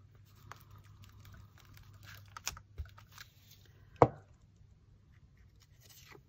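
Light clicks and taps of a glue bottle and paper being handled on a craft table, with one louder knock about four seconds in, over a low steady hum.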